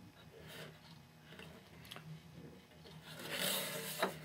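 Faint rubbing and scraping as a wooden model airplane is handled and turned in the hands, with a louder rustle near the end.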